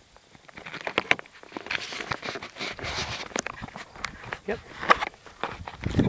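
Handling noise on the iPod's own microphone: irregular rubbing, scraping and small knocks as the device is held and taped onto the plane, starting about half a second in.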